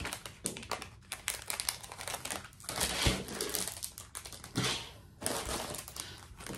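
Packaging crinkling and rustling as it is handled and opened by hand, in an irregular crackle with louder spells about halfway through and again near the end.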